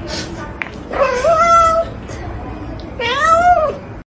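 Cat meowing twice, about two seconds apart. The first meow rises and then holds. The second arches up and falls away.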